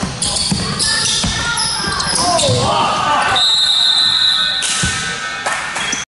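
Basketball game sounds in a gym: a ball bouncing on the hardwood floor with repeated knocks, sneakers squeaking, and players' voices. A steady high tone is held for about a second past the middle.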